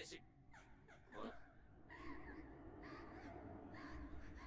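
Near silence with a faint voice heard in snatches: dialogue from the anime episode playing quietly in the background.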